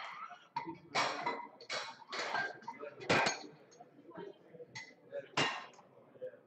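Metal weight plates being loaded onto a barbell, giving several sharp clanks and clinks spread over a few seconds, with low voices murmuring between them.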